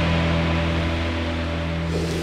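Background music: a sustained low note held steady, with the treble gradually dying away.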